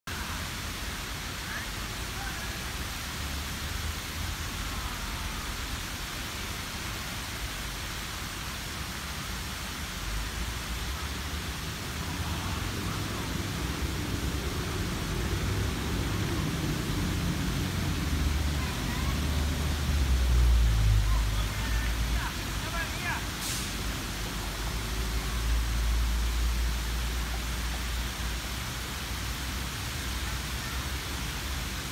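Water fountain jets spraying into a shallow pool, a steady hiss, with a low rumble that swells through the middle and faint voices.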